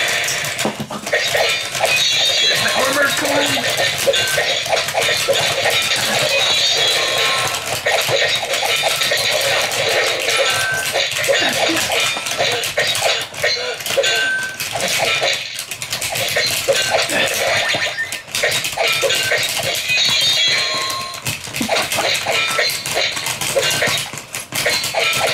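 Akedo battle arena toy's built-in speaker playing its fast fight music and game sound effects during a bout, mixed with rapid clicking and clacking from the plastic figures and joystick controllers.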